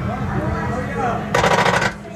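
A half-second burst of rapid clicking, a fast even rattle, starting just over a second in, over a low steady hum and faint voices.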